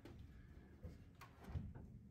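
Faint clicks and a low thump about a second and a half in, from an upright piano and the metal frame of a piano tilter shifting as the piano is pulled back onto it.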